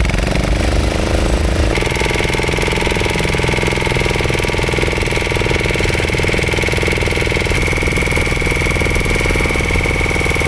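Small stern-mounted engine of a wooden fishing boat running steadily under way, with a rapid even beat. The sound changes abruptly about two seconds in, after which a steady high whine runs over the engine.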